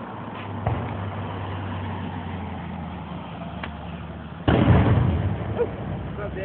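A loud firework bang about four and a half seconds in that dies away over about a second, over a low steady hum.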